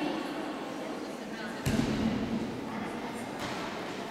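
Indistinct voices echoing in a large sports hall, with a sudden thud about a second and a half in.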